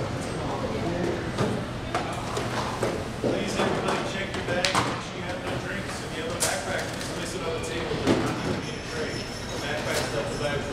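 Indistinct voices echoing in a large hall at an airport security checkpoint, with scattered sharp clicks and knocks through it.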